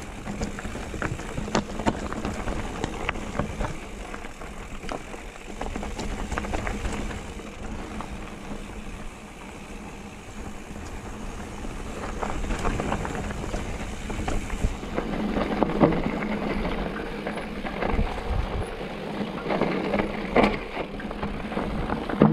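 Mountain bike ridden over a rocky dirt trail: tyres crunching over loose stones, with frequent clicks, knocks and rattles from rocks and the bike, over a low rumble. It grows louder and rougher from about twelve seconds in.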